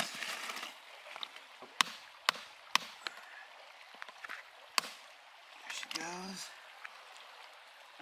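Hammer striking a cold chisel set against a geode to crack it open: a quick run of sharp metallic strikes about half a second apart, then a last strike about two seconds later. A short grunt follows.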